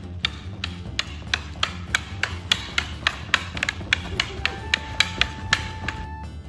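Wooden palcaty (Polish fencing sticks) clacking together in a rapid sparring exchange, about three sharp knocks a second.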